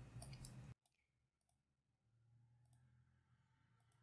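Near silence: a few faint computer mouse clicks, then the sound cuts off to dead silence under a second in.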